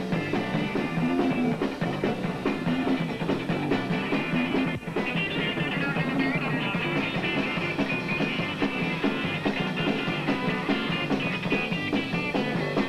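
A live rock band playing loudly, with drums and cymbals, with a brief dropout just under five seconds in.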